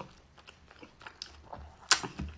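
Close-miked mouth chewing a bite of peeled kiwi: soft wet clicks and smacks, with one sharper click just before the end.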